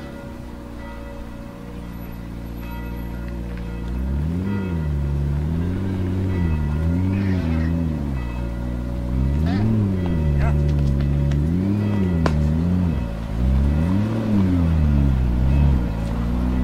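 McLaren P1's twin-turbo V8 running, then revved in a string of short throttle blips, about one a second, from about four seconds in while the car is stationary.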